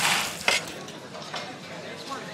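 Professional kitchen clatter: a sharp clink of dishes or cutlery about half a second in, over a low hiss of cooking.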